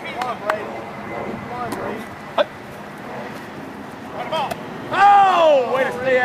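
People's voices calling out, with one loud, drawn-out shout near the end whose pitch falls. A single sharp knock comes about two and a half seconds in.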